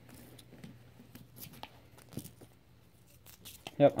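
Faint paper rustling and scattered small clicks of a paper-wrapped roll of pennies being torn open and handled.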